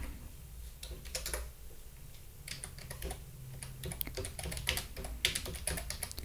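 Computer keyboard being typed on: irregular, quick keystroke clicks, over a faint low hum.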